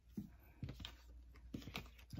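Faint, irregular light clicks and taps, several in quick succession, from tarot cards being handled on a cloth-covered table.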